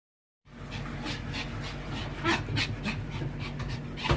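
A Pomeranian panting hard in excitement, quick breaths about four a second.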